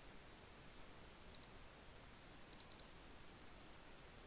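Near silence with faint computer mouse clicks: a couple of clicks about a second and a half in, then a quick run of about three clicks a little before the three-second mark.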